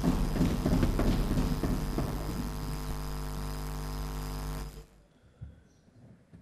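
Steady electrical mains hum through the chamber's microphone system, under irregular rustling and knocks of movement near the podium, busiest in the first two seconds. The sound cuts off abruptly a little before the end, leaving only faint knocks.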